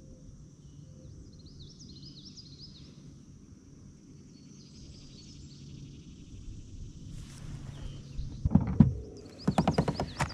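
A steady insect buzz with bird chirps twice in the first half. In the last three seconds come sharp knocks and a quick run of clicks as the rod and baitcasting reel are handled close by.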